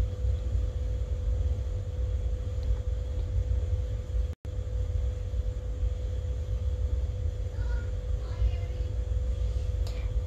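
Steady low rumble with a faint constant hum, as of a running kitchen appliance, broken by an instant of silence about four and a half seconds in.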